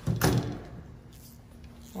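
A short knock or clunk of something being handled, then low room tone with a faint steady hum.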